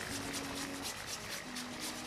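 A potato being grated on a flat metal hand grater, a fast run of short rasping strokes, several a second.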